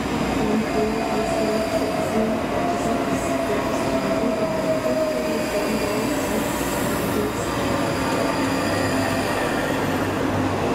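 ScotRail Class 334 Juniper electric train moving along the platform, its wheels rumbling on the rails. A traction motor whine falls slowly in pitch over about six seconds as the train slows.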